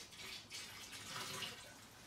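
Bleach poured slowly from a plastic jug into a plastic barrel half full of water: a steady trickle splashing into the water, easing off near the end.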